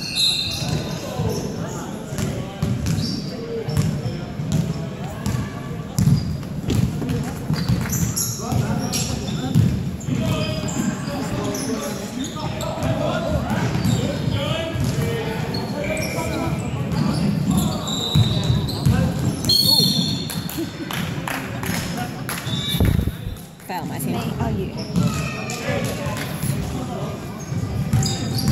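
Basketball game in a large, echoing gym: the ball bouncing on the wooden court among many short knocks, under a steady mix of indistinct voices from players and spectators.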